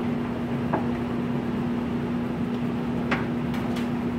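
A steady machine hum with a low tone, under a few brief scratches and rustles of a crayon coloring on a hand-held sheet of paper, most of them near the end.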